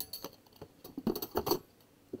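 Stainless steel spatulas clinking against each other as they are pushed down into a crowded plastic drawer: a scatter of sharp metal clinks, the loudest a little past the middle.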